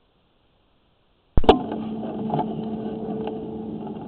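Dead silence, then a sharp click about a second and a half in as the inspection rig's microphone audio cuts in, followed by a steady low hum.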